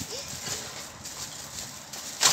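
Clear plastic bag rustling and crinkling, with small plastic toys clattering inside it as a child's hand handles the bag.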